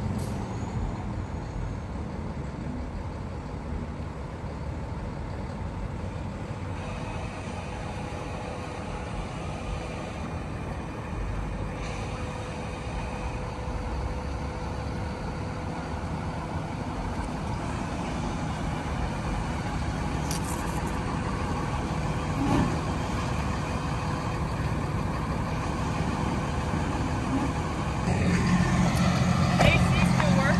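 Diesel engine of a Hino box truck running as the truck drives slowly across a lot, growing louder near the end as it comes closer.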